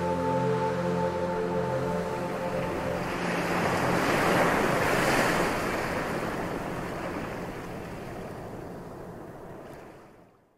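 Intro music with held chords fading out, overtaken about three seconds in by a swelling rush of noise like surf, which peaks near the middle and then fades away by the end.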